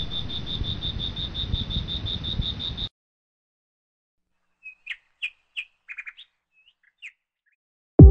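A steady pulsing trill, about seven pulses a second, over a hiss, cut off suddenly about three seconds in; after a short silence, scattered short, faint bird chirps.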